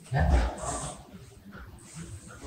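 A person's voice: a short low murmur near the start, then a brief hiss, with faint murmuring after.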